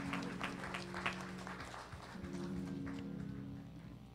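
A congregation clapping together in a steady rhythm, about three claps a second, over music of held low chords. The clapping dies away about halfway through while the music carries on.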